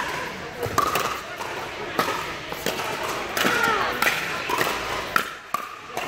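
Pickleball rally: paddles striking the hard plastic ball and the ball bouncing on the court, a string of sharp, irregular pops that echo in an indoor hall.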